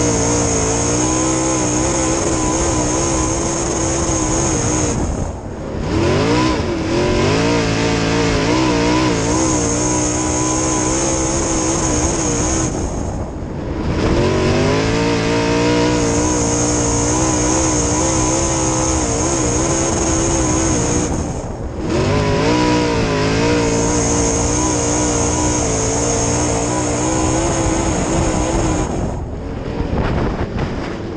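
A dirt-track modified's V8 engine heard from inside the cockpit, running hard down the straights. About every eight seconds the driver eases off the throttle for a turn, and the pitch drops and then climbs again as he gets back on the gas.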